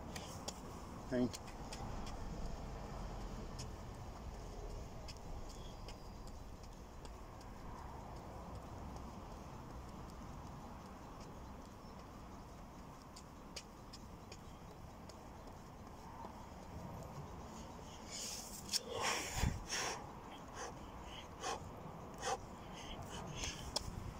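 A man breathing hard, an hour into non-stop burpees with press-ups. Scattered thuds and scuffs come from his body dropping to the ground and jumping up, with a cluster of louder bursts and a low thump about three-quarters of the way through.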